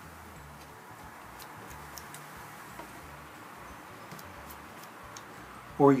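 Hand carving gouge paring pine between carved letters: faint scraping with a few small, scattered clicks.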